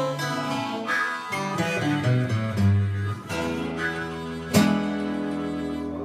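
Acoustic guitar and harmonica playing the instrumental close of a blues song. There is a final strummed chord about four and a half seconds in that is left ringing.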